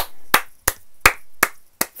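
One person clapping hands six times at an even, slow pace, about three claps a second.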